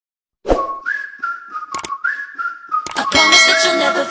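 Intro music: a whistled tune with little upward slides over a light beat, the full backing track coming in about three seconds in.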